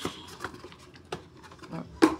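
Hands handling cosmetic packaging in a cardboard shipping box: a few separate light knocks and taps as boxes and a bottle are moved about.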